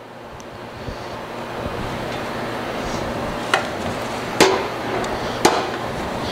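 Handling noise during kitchen work: a steady rustling hiss that slowly grows louder, with three sharp knocks about a second apart in the second half.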